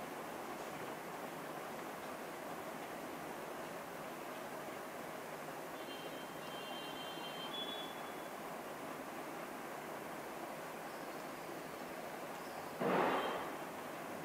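Steady hiss of room noise, with faint high tones about six seconds in and a short, louder rustling noise near the end.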